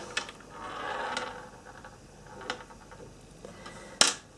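Faint handling noise of beads being threaded onto an elastic cord: a soft rustle about a second in and a few light clicks of beads against each other and the table.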